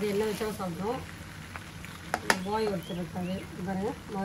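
Flat noodles with prawns frying in a wok, a light sizzle under a voice, with one sharp clack of the spatula or bowl against the pan a little after two seconds in.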